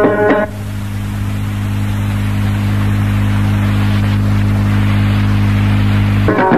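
Amazigh loutar music with percussion cuts off about half a second in. It leaves a steady electrical hum with hiss, the recording's noise floor between songs, which slowly grows a little louder.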